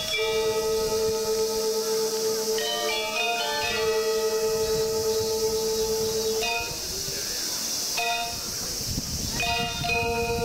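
Balinese gamelan music of long, ringing metallic tones, moving to new pitches every few seconds, over a steady hiss.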